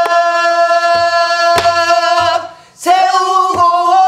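A woman singing pansori-style in long held notes, taking a short breath just past halfway before the next held note. She accompanies herself with a few strokes on a buk barrel drum, one of them a sharp crack.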